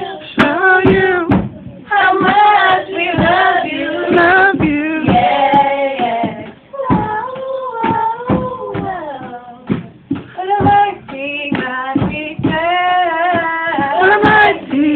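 A young female voice singing a gospel song through a handheld microphone, in sung phrases separated by short breaths.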